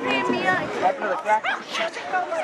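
Several people's voices talking and calling out over one another, in short overlapping bursts.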